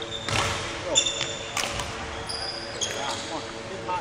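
Court shoes squeaking sharply and footsteps thudding on a wooden sports-hall floor as a badminton player moves quickly through footwork steps. There are a few short, high squeals, each under half a second, and three thumps in the first two seconds.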